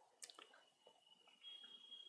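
Near silence: faint room tone, with a click shortly in and a thin high tone that is held faintly and grows a little louder in the second half.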